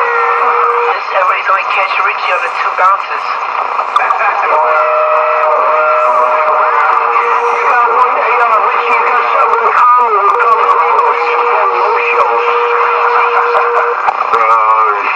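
Several voices talking over one another, heard through a narrow, tinny channel like a phone or radio speaker. A steady low tone comes and goes beneath them.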